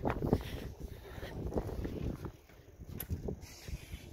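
Low, uneven rumble on a phone microphone from wind and handling, with a few scattered light knocks and clicks.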